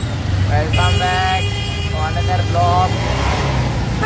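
A vehicle horn sounds once for about a second, a flat high-pitched toot, over the steady low rumble of the engine heard from inside the moving vehicle; voices talk around it.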